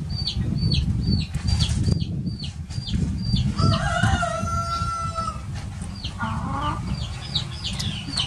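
Chickens: a rooster crows once, a held call starting about three and a half seconds in and lasting nearly two seconds. Around it come rows of short, high, falling peeps about three a second, and a brief wavering call near six and a half seconds, all over a constant low rumble.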